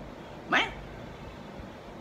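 A man's voice speaking a single word, "main?" ("me?"), about half a second in, its pitch sliding sharply upward like an indignant question; the rest is low room noise.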